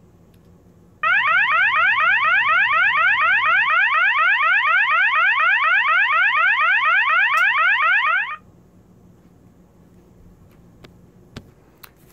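System Sensor MAEH24MC horn strobe sounding its Fast Whoop tone: a rapid string of rising whoops, about four a second. It starts about a second in and cuts off suddenly some seven seconds later.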